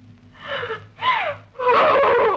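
A woman's breathy gasps and a short falling vocal sound, then a loud vocal outburst near the end.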